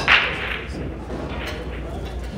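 A single sharp crack of pool balls struck on a nearby table, about a tenth of a second in and dying away within about half a second, over the steady hum of a busy pool hall.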